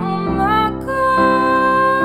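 A woman singing a wordless melodic line: a short rising phrase, then a long held note, over a steady chordal instrumental accompaniment.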